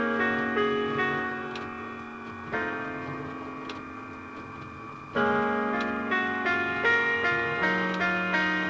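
Solo piano music from the LEGO Powered Up app's recorded soundtrack, dubbed in cleanly rather than coming from the LEGO model. Notes sound one after another and soften to a quiet held chord about two and a half seconds in. Louder notes come back a little past the middle.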